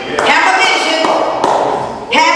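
A woman preaching loudly into a microphone in a large hall, her voice coming over the amplification, with a couple of sharp thuds among the words.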